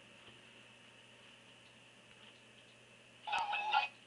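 Quiet room tone with a faint steady hum and high whine, then near the end a brief, tinny burst of sound from the SmartQ V7 tablet's small speaker: the YouTube video's soundtrack playing through Gnash while the picture has not yet appeared.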